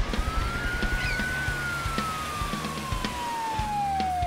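Police siren sound effect: a single long tone that rises briefly, then slides slowly and steadily down in pitch, like a siren winding down.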